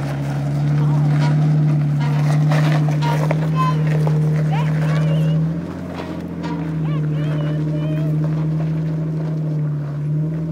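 Jeep Wrangler's engine working steadily at low revs as it crawls up a steep rock climb, easing off briefly about six seconds in before pulling again. Faint voices in the background.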